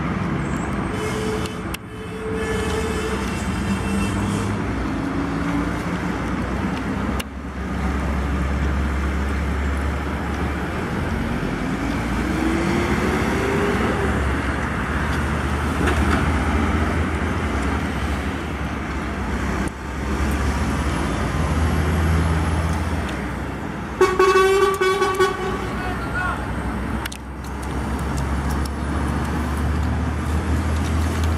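Diesel semi-trucks passing on a highway with a steady low engine rumble; one engine's pitch rises midway as it pulls. About three-quarters of the way through, a truck's horn sounds one blast of about a second and a half, the loudest thing heard.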